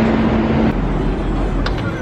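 Street traffic with a city bus running close by: steady engine and road noise, with a low hum that stops under a second in and a couple of light clicks near the end.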